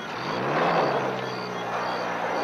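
Military jeep engine revving up and then running steadily: its pitch rises about half a second in and then holds, over soft background music.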